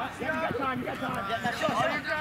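Speech only: people's voices talking on the sideline, with no other distinct sound.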